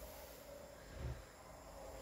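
Quiet kitchen room tone with one faint, low, soft thump about a second in.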